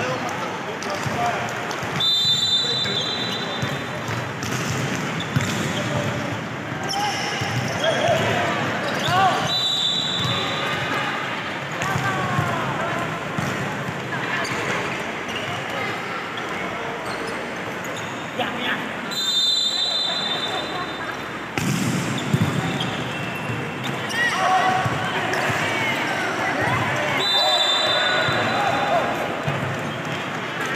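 Indoor volleyball rally sounds echoing in a sports hall: the ball being struck and bouncing on the wooden court, with players shouting. Short high-pitched tones cut through about four times.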